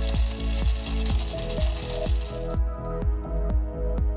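Bamix hand blender driving its processor attachment, grinding a small quantity of dry spices: loud grinding noise that starts at once, runs for about two and a half seconds, then cuts off. Background music with a steady beat continues throughout.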